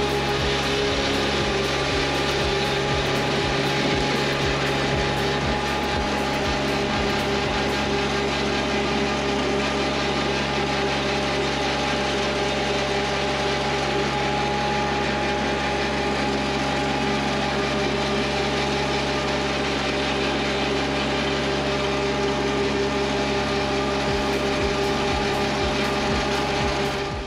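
Toro Greensmaster 3250D triplex reel mower's diesel engine running steadily under load with its cutting reels spinning as it mows, with a run of light ticks in the first several seconds.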